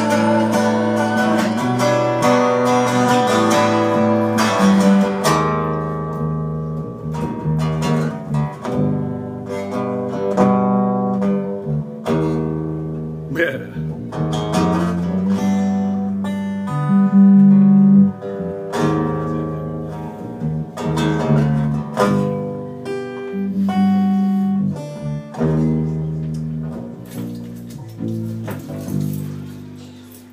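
Acoustic guitar and electric bass playing an instrumental passage: dense strumming for about the first five seconds, then thinner picked guitar notes over moving bass notes.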